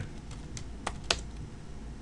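Computer keyboard typing: a few separate keystrokes, the loudest about a second in.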